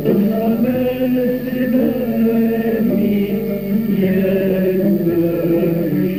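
Traditional Algerian vocal music: a male voice sings a long, ornamented chanted line in Arabic. The recording is old and dull, with little treble.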